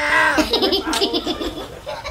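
Young men laughing: a short high-pitched exclamation, then a quick run of ha-ha laughs from about half a second in.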